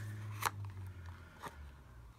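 Handling noise of a glass ink bottle and its paper box on a desk: two sharp clicks about a second apart, over a low steady hum.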